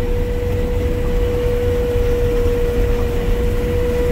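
Combine harvester running steadily while cutting soybeans, heard from inside the cab: a constant low rumble with a steady whine held on one note.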